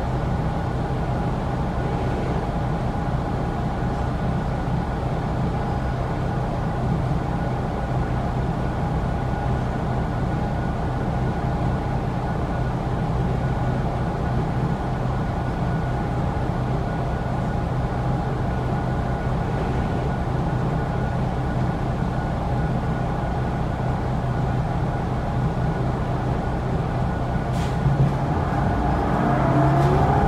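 New Flyer Xcelsior XD40 diesel transit bus heard from inside the cabin, its engine and ventilation running at a steady hum with several steady tones while it stands. There is a click near the end, and then the sound rises as the bus starts to pull away.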